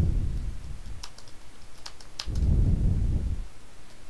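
Typing on a computer keyboard: irregular clicking keystrokes. A low rumble sits under the clicks at the start and again from about two seconds in, for about a second.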